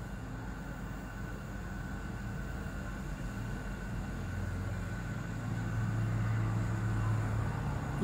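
Low rumbling background noise with no speech, growing louder from about halfway through.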